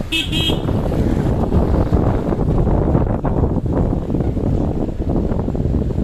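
Steady rumble of a car driving along a road, with a short vehicle horn toot at the very start.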